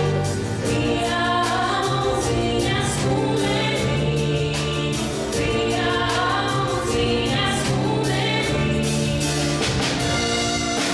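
Dance music for a folk dance: a choir singing with instrumental accompaniment, held notes over a steady beat.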